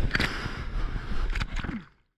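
Whitewater rushing and splashing around a surfboard, with wind buffeting the microphone and a couple of sharp splashes; the sound fades out to silence near the end.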